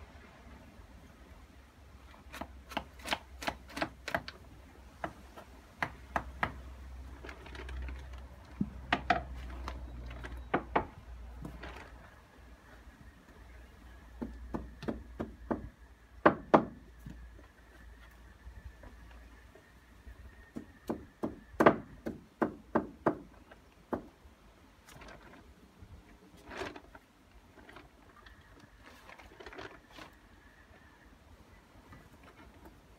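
Hammer blows on timber, coming in short runs of quick strikes, several a second, with pauses between; the loudest blows fall a little after the middle. The hammering is part of fixing a rough-sawn timber board along the side of a deck.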